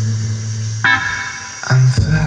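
Bass-heavy music played loudly through a home-built speaker cabinet driven by an amplifier with a 10-amp transformer: a deep sustained bass note, a sharp struck note a little under a second in, and the bass stepping up to a higher note near the end.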